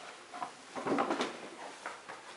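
A few knocks and scuffs of people moving about on stone floors and stairs, loudest about a second in.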